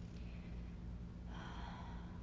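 A woman's soft breathing, with a clear intake of breath in the last half second, over a low steady hum.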